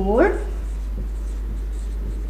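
Marker pen writing on a whiteboard: faint, short stroke sounds as a line of text is written, over a steady low hum.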